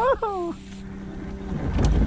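A man's short excited shout, rising then falling in pitch. It is followed by a faint steady hum and wind rumbling on the microphone, which swells near the end.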